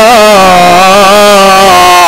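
A man's voice over a public-address microphone in a chanted, sung delivery. It wavers through a short ornament at the start, then holds one long, steady note.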